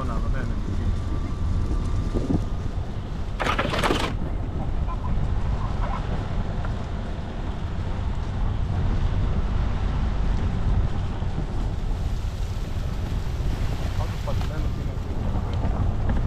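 Off-road vehicle driving slowly along a rough dirt forest track: a steady low rumble of engine and tyres on gravel and leaves. A short, loud clatter comes about three and a half seconds in.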